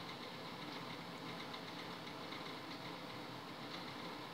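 Microwave oven running at full power: a steady low hum.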